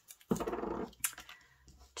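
Clear adhesive tape being pulled off its roll: a rough, crackling noise lasting about half a second, followed by a fainter scrape.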